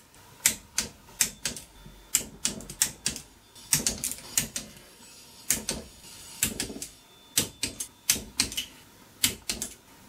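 Hand ratchet wrench clicking in irregular short bursts, with metallic clinks of socket and steel, as the final drive cover bolts on the belt side of a GY6 scooter engine are run in.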